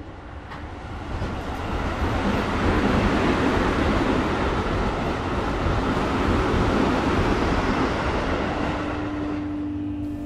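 Metro train running through the station: a loud, steady rumble and rush of noise that swells up over the first couple of seconds and then holds, with a steady low tone joining in near the end.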